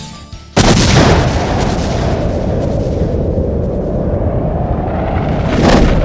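A single loud boom sound effect about half a second in, its rumble dying away slowly over several seconds, then a short whoosh near the end leading back into music.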